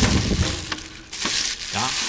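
Tissue paper rustling and crinkling as a gift is unwrapped, with a sharp knock right at the start and a few smaller clicks after it.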